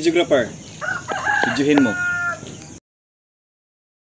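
A rooster crowing once, a single call from about one second in that ends in a long held note. The sound then cuts off abruptly to dead silence.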